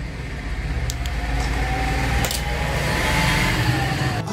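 A low, steady engine-like rumble that grows louder from about a second in, with a faint whine slowly rising in pitch and a few light clicks.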